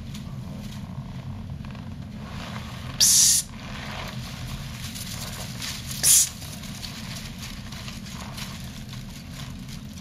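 Dry ornamental grass stalks rustling as they are pushed aside close to the microphone: two short, loud rustles about three seconds apart, over a steady low hum.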